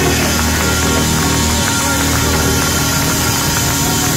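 Live blues band playing a slow, sustained passage without vocals, with the audience clapping along.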